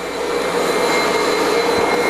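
Ruwac FRV100 single-venturi, compressed-air-powered vacuum running steadily while its floor tool sucks up starch and bentonite powder: a loud, even rushing hiss with a faint steady whistle over it, growing a little louder in the first half second.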